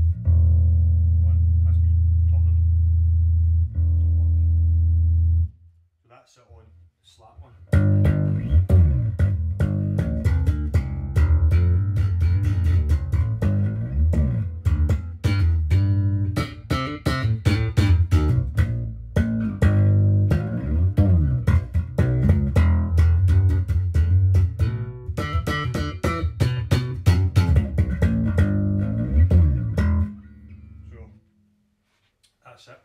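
Cort Curbow 4 electric bass played through an amp on its slap setting: a low note held and restruck twice, a short pause, then about twenty seconds of busy riffing with sharp, percussive note attacks.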